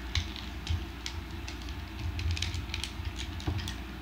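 Plastic parts of a Hasbro Transformers Combiner Wars Streetwise figure clicking as it is handled and its pieces are pressed into place to finish its car mode. The clicks are irregular, with a quick cluster a little past halfway, over a low steady rumble.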